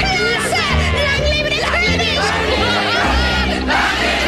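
A crowd of cartoon voices cheering and whooping over the song's orchestral backing, with low bass notes under the excited voices.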